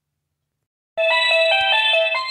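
Dead silence, then about a second in a simple electronic melody of clear, beep-like notes starts abruptly and plays on, like the tune from a toy's sound chip.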